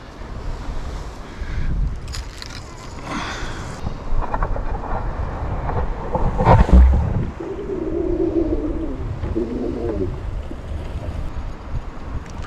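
Wind rumbling on the microphone over the wash of ocean swell below the cliff, with a heavy knock about halfway through and a wavering mid-pitched sound for a few seconds after it.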